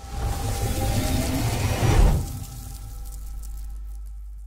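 Logo transition sound effect: a swelling, noisy whoosh with faint rising tones that builds to a low hit about two seconds in, then a low drone that slowly fades.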